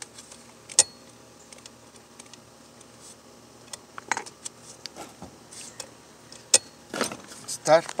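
Sporadic light clicks and knocks of hands handling a Poulan Pro 25cc pole saw's plastic housing and controls near the carburettor and primer bulb. A few sharper clicks stand out about a second in, around four seconds in and past six seconds.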